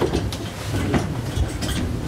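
Several people sitting back down in office chairs: a low rumble of chairs moving, with scattered knocks and clicks.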